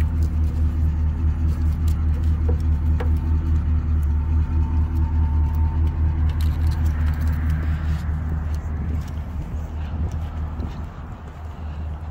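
A motor vehicle engine idling: a steady low hum, getting a little quieter in the last few seconds.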